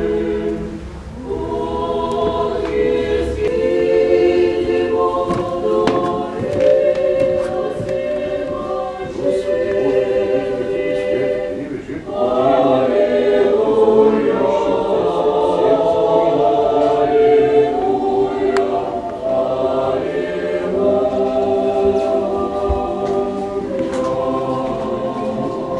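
Orthodox church choir singing a cappella in several voice parts, holding long chords. There is a short break about a second in and another about halfway through.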